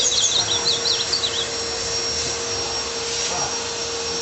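Caged azulão (ultramarine grosbeak) singing a quick phrase of high, rapidly jumping notes in the first second and a half. Under it runs a steady electric-motor hum with a constant tone.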